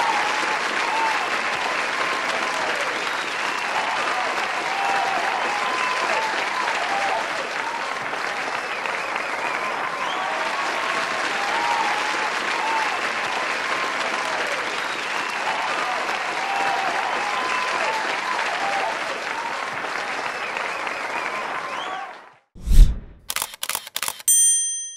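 Audience applauding and cheering, with many short high shouts and squeals over the clapping. It cuts off about two seconds before the end, followed by a deep boom, the loudest sound here, and the start of a ringing chime.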